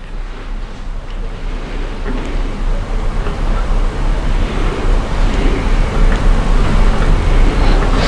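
Loud steady rushing noise with a deep low rumble, growing gradually louder.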